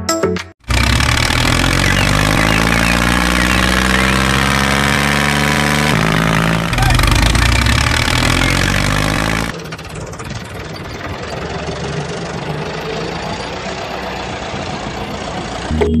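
A dubbed-in tractor engine sound effect: an engine starting and running with its pitch slowly rising and falling, cutting in abruptly. A little over halfway through it changes to a duller, steadier engine running sound.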